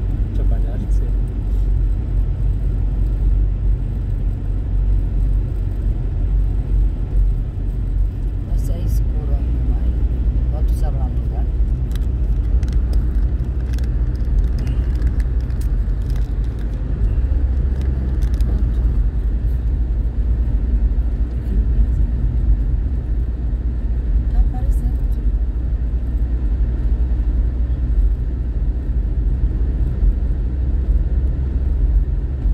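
Steady low rumble of a car driving at road speed, heard from inside the cabin: engine and tyre noise on a paved highway. A few light clicks come between about nine and thirteen seconds in.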